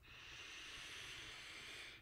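A man's slow, steady in-breath, faint and airy, lasting about two seconds.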